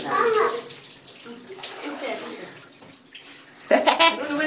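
Water poured from a mug over a child's head in a bath, splashing. A voice is heard briefly at the start, and a loud voice breaks in suddenly near the end.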